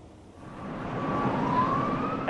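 An emergency vehicle siren rising in pitch over street noise, fading in about half a second in and growing louder.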